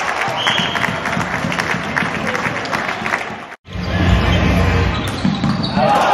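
Floorball play in a large sports hall: repeated sharp clacks of sticks on the plastic ball and the floor, with shoes squeaking on the court, all echoing in the hall. The sound cuts out for an instant a little past halfway.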